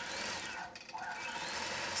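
Gammill Statler Stitcher computer-guided longarm quilting machine stitching, its motor whirring with a pitch that rises twice, with a brief dip in the middle as the head moves across the quilt.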